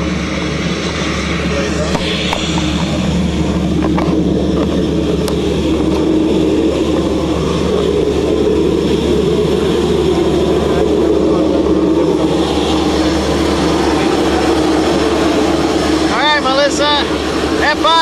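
Single-engine propeller airplane's engine running steadily close by, a continuous low drone. A person's voice is heard briefly near the end.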